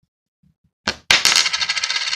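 A copper 1p coin landing after a toss: a click about a second in, then a loud ringing rattle for about a second as it settles.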